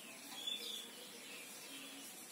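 Marker pen writing on a whiteboard, faint, with one brief high-pitched squeak of the felt tip about half a second in.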